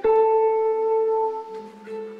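Live improvised music for electric guitar, piano and clarinet: a loud note with a sharp attack rings on for about a second and a half and then fades, and a lower held note comes in near the end.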